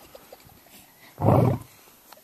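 Male lion roaring: one deep roar call about a second in, lasting about half a second.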